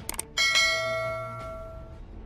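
Two quick clicks, then a single bright notification-bell ding sound effect that rings out and fades over about a second and a half.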